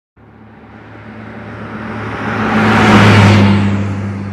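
A vehicle pass-by sound effect: a rushing noise over a steady low hum that swells to a loud peak about three seconds in and then fades away.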